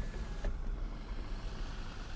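Car power window motor whining faintly and stopping with a small click about half a second in, over a steady low rumble inside the car's cabin.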